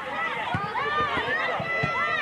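Several children's voices calling and shouting over one another during a youth football game, with a few short dull thuds mixed in.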